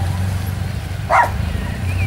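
Motorcycle engine running at low revs, a steady low rumble. A short vocal call cuts in a little over a second in.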